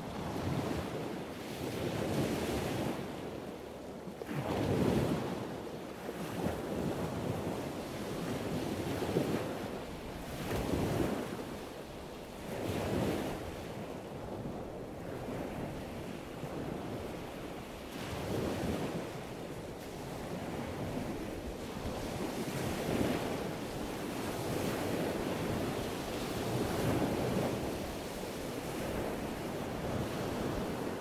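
Ocean surf breaking on a rocky shore, swelling and falling back every few seconds, with wind rushing over the microphone.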